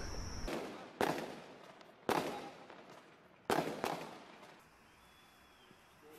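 Three sharp bangs roughly a second apart, each dying away over about a second.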